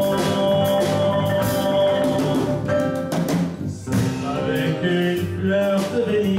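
A live band playing: acoustic guitar, electric bass and drum kit together, with steady drum strikes.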